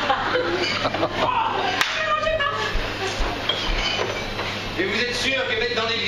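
Indistinct voices, with one sharp click a little under two seconds in.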